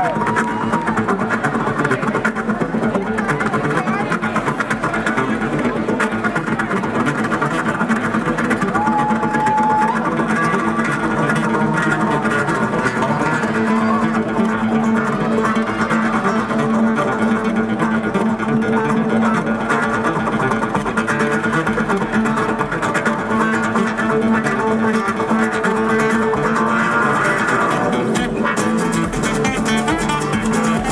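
Two acoustic guitars played live as a duo, a continuous instrumental of fast picked and strummed notes at a steady loudness.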